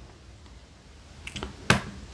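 Quiet pause, then a few light, sharp clicks about a second and a half in, the loudest near the end, alongside a short spoken "oh".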